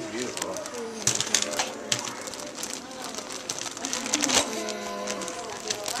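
Plastic zip-top bag crinkling and rustling in a run of quick, irregular crackles as it is handled and rummaged through.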